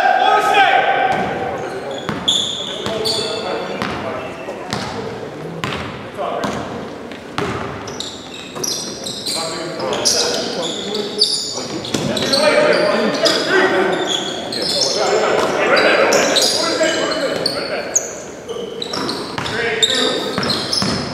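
A basketball bouncing on a hardwood gym floor during play, with repeated sharp bounces, high-pitched sneaker squeaks and players calling out. All of it echoes in a large, nearly empty gym.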